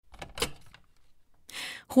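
A telephone handset being picked up: a short handling clatter with one sharp click about half a second in.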